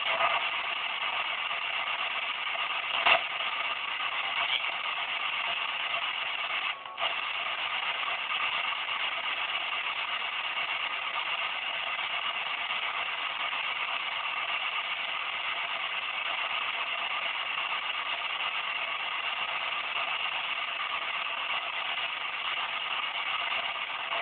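P-SB7 spirit box sweeping the radio band at a 100 ms sweep rate, giving a steady hiss of radio static through its small speaker. A short click comes about three seconds in, and the static briefly drops out about seven seconds in.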